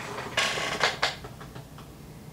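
A chair creaking and rustling as someone shifts in it: three short creaks in quick succession within the first second, then a few faint ticks.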